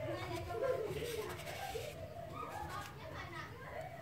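Children's voices in the background, talking and playing.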